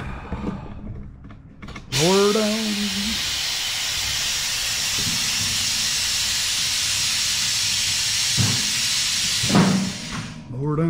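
Compressed air blowing dust off a push mower: a loud, steady hiss that starts abruptly about two seconds in and cuts off at the end, with a short spoken word over it.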